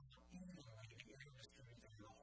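Faint man's voice talking, at a very low recording level.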